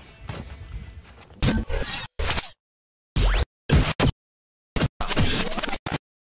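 Glitch-style outro sound effects: after a moment of faint background noise, a string of short, sharp hits and whooshes, one carrying a rising sweep, each cut off abruptly into dead silence.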